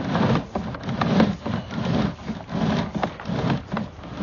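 Sewer inspection camera's push cable being pulled back out of the sewer lateral, rubbing and scraping in short strokes, about three a second, with a few sharp clicks.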